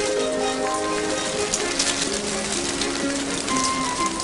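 Steady pouring rain, the spell-made rain putting out the fire, under a film-score melody of slow held notes.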